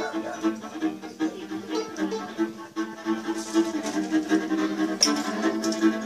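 Live acoustic folk-jazz band playing a rhythmic tune, led by violin with plucked double bass underneath and a saxophone in the ensemble.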